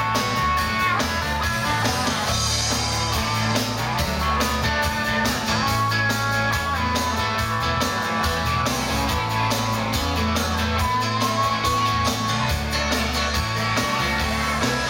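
A dansband playing live on electric guitars, bass, drums and keyboards, with a steady beat and a guitar-led melodic passage.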